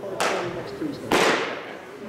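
Two sharp pops of pitched baseballs smacking into catchers' leather mitts, about a second apart, each echoing briefly in a large indoor hall.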